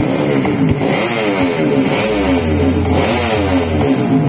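Several drag-race motorcycles revving at the start line. Their engine notes overlap, each rising and falling again and again.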